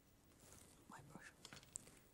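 Near silence, with a few words spoken under the breath about a second in and one faint click near the end.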